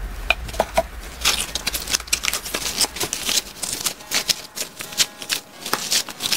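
Glitter slime being squeezed and kneaded by rubber-gloved hands in a plastic tub, giving rapid, irregular sticky crackles and squelches.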